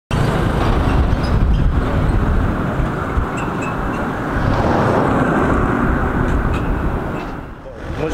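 Street ambience: steady road traffic noise with a heavy low rumble, dipping briefly near the end.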